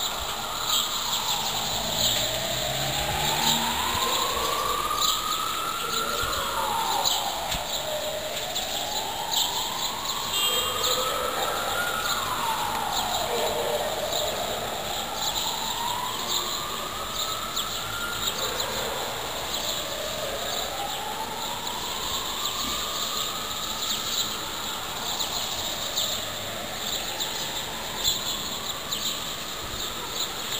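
A siren wailing, its pitch rising slowly over a few seconds and then falling, about every six seconds, over a steady high hiss.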